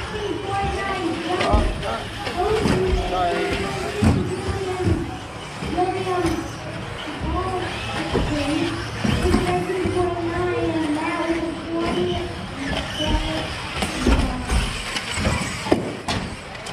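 Electric 1/10-scale RC buggies racing, their motors whining and rising and falling in pitch with each burst of throttle, with occasional thumps.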